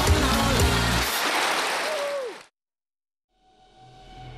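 A woman's singing over a Balkan folk-pop band ends about a second in, giving way to a noisy wash in which a last sung note slides downward. The sound cuts off abruptly to silence just past the halfway point, then a faint steady music bed fades in near the end.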